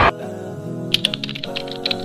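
Soft background music of held notes, joined about a second in by a quick run of typing clicks, a typewriter-style keystroke sound effect. A loud crowd-like noise cuts off right at the start.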